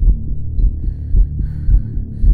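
Film score: a deep, heartbeat-like low pulse about twice a second over a steady low hum, with faint high sustained tones coming in about half a second in.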